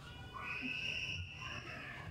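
One drawn-out, high-pitched whining cry of even pitch, lasting about a second and a half.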